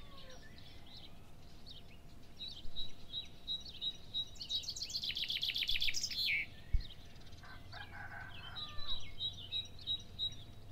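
Birds singing: high chirps repeated about twice a second, with a fast trill in the middle and a lower call a little later. A single sharp knock comes about two-thirds of the way through.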